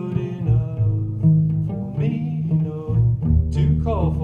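Cello playing: a low bass line of held notes that steps between pitches, with higher melodic notes over it.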